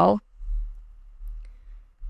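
Computer mouse clicking faintly, twice in quick succession about a second and a half in, over a low rumble.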